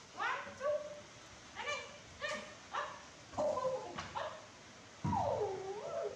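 Baby macaques calling: a series of short, high squeals and coos that slide up and down in pitch, about one a second, with a louder, longer call about five seconds in.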